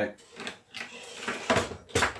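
Handling noises as a bulky fur-covered prop and objects are moved about on a kitchen counter: rustling, then two sharp knocks, the second the loudest, near the end.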